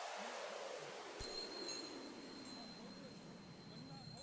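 Logo-intro sound effect: a falling whoosh fades out, then about a second in a run of high chime tinkles begins, five or so strikes over a steady high ring, the loudest shortly after the first.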